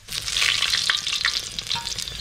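A black scorpion deep-frying in a wok of hot oil: a steady sizzle with many small crackles.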